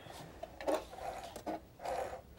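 Faint rustling and scraping of fabric being handled and drawn out from under a sewing machine's presser foot, as a few brief soft noises.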